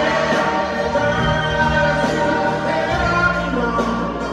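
A live band led by piano plays a slow song with sustained sung vocals. It is heard from the audience in a large arena.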